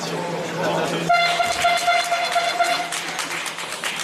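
A gym scoreboard horn sounds one steady note for about two seconds, starting about a second in, over gym crowd noise.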